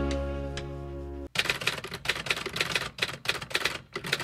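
A held musical chord fades out. About a second in, an abrupt cut brings a rapid, irregular clatter of sharp clicks and taps, several a second.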